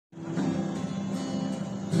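Acoustic guitar strummed, chords ringing on, with a fresh strum just before the end.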